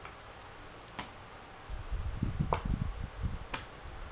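Three sharp clicks about a second apart, with a stretch of low, uneven thumps and rustling in the middle.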